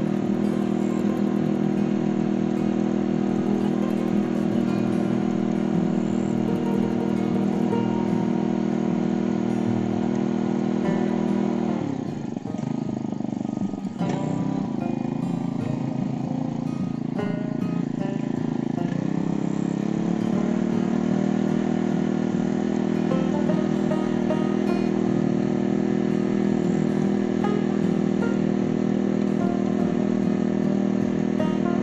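Small engine of a mini tiller running steadily as its tines churn hard, dry soil. About twelve seconds in, the engine speed drops and sags for a few seconds, then climbs back up to a steady run.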